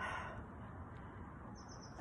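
Quiet outdoor background noise with a faint, brief high-pitched bird chirp near the end.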